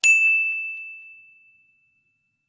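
A single ding sound effect: one bright, high, bell-like tone struck once that fades away over about a second and a half.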